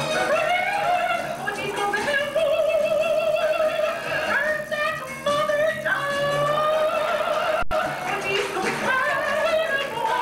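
A drag performer singing in a high, operatic style with a wide, warbling vibrato, holding long notes, over stage music. A sudden brief cut about three quarters of the way through.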